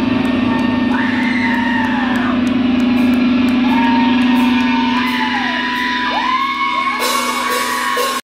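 Live heavy rock band playing loud in a hall: a steady low droning note under long held high tones that slide downward at their ends, recurring every couple of seconds, with faint cymbal strikes.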